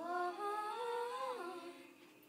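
A 13-year-old girl singing unaccompanied, holding a note that steps up, holds, then slides down and fades about a second and a half in.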